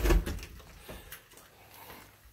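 An interior panel door being opened: a knock right at the start, then a few light clicks and rustles as it swings.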